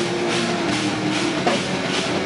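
Live djent metal band playing: distorted guitars and bass holding low notes over drums, with cymbal crashes.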